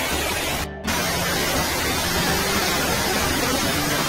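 Tall man-made indoor waterfall falling in several streams down a planted wall: a steady rush of falling water, broken by a brief dropout just under a second in.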